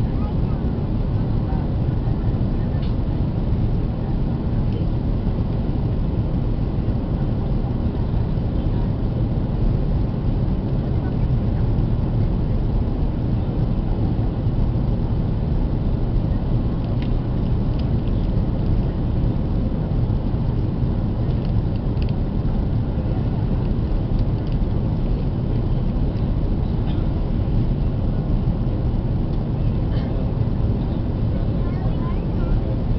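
Steady low rumble of engine and airflow noise inside the cabin of an Airbus A330-300 airliner in flight, heard from a window seat over the wing.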